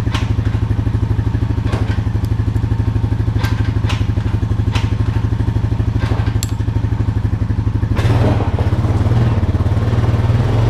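Honda Rancher 420 ATV's single-cylinder engine idling with a steady pulsing beat, with several sharp clicks over it. About eight seconds in, the engine note picks up and grows fuller as the ATV pulls away.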